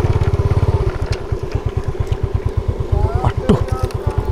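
Yamaha underbone motorcycle engine running at low speed, a steady train of low pulses that is heavier at first and then evens out.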